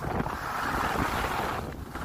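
Wind buffeting the microphone of a skier moving downhill, mixed with the hiss of skis sliding on groomed snow, easing briefly near the end.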